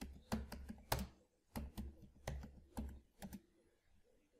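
Typing on a computer keyboard: about a dozen quick, irregular keystrokes with a short pause about a second in.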